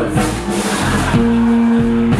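Live blues band music: a noisy wash in the first second, then a long held chord from about a second in.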